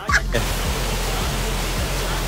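A child's laugh cuts off right at the start. Then comes a steady rushing noise in the open air, of the kind made by wind on the microphone or by a waterfall below.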